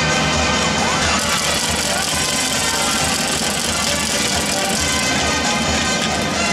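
Marinera norteña music played by a band with brass and wind instruments, steady and loud, over a pulsing bass.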